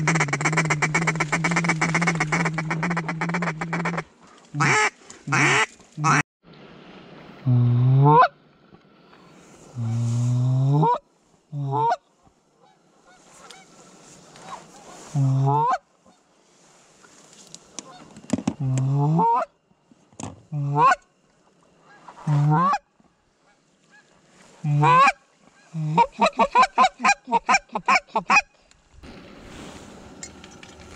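Canada goose calling: a long buzzy call in the first four seconds, then single honks every second or two, and a fast run of clucks near the end.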